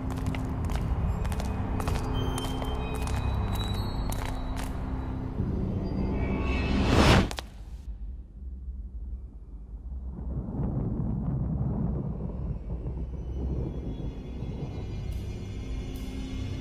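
Tense film-score music with sharp clicking hits, swelling into a loud rising whoosh that cuts off abruptly about seven seconds in, followed by a quieter low rumbling drone that builds again.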